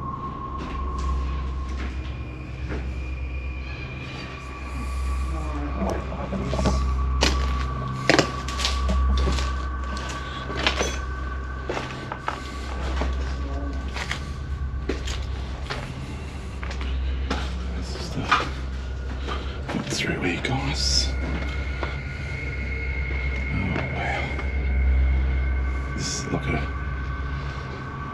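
Footsteps crunching over burnt debris and soot, with scattered knocks and clatters as loose objects are bumped, over a low pulsing rumble and faint steady high tones.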